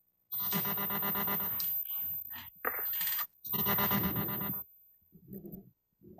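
Glitching web-conference audio: three bursts of about a second each and a fainter one near the end, each a buzzy, steady stack of tones with no clear words, typical of a broken-up WebEx feed.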